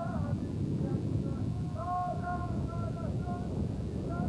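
A distant voice chanting in long held notes, heard twice, over a steady low rumble of wind on the microphone.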